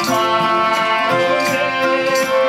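Live Nepali folk music: a harmonium holds chords that change in steps, and a pair of hand drums is struck now and then.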